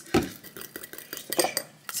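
A metal utensil stirring lime juice into sour cream in a small glass bowl, with irregular clicks and scrapes against the glass. There is a soft knock just after the start.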